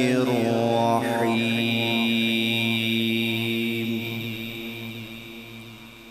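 A man's voice reciting the Quran in melodic tajweed style, closing the Bismillah: a short melismatic run, then a long held note from about a second in that slowly dies away toward the end.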